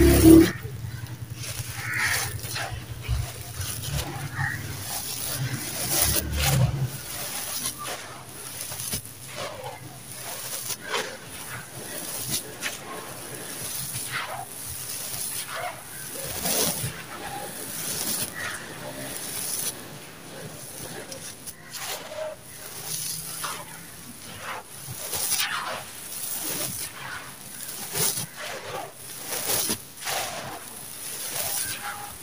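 Dry sand-and-cement mix with small stones crunching and trickling as bare hands scoop, squeeze and crumble it, in a steady run of irregular gritty crunches. A low rumble runs under it for the first several seconds.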